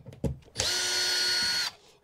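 Cordless screw gun with a #2 square bit driving a screw out of a trailer's wooden access panel. A few light clicks as the bit seats, then the motor runs with a steady whine for about a second and drops in pitch as it stops.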